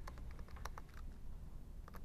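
Typing on a computer keyboard: a run of quiet, irregularly spaced keystrokes as a word is entered.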